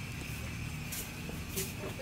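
Quiet outdoor background: a low steady rumble with faint voices in the distance, and two light clicks about a second and a second and a half in.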